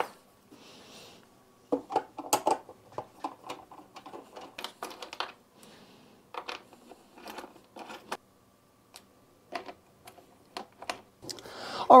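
Irregular small clicks, taps and light clatter of cable ends and metal ring terminals being handled and fastened onto a 12-volt battery's terminals, with a brief faint rustle about a second in.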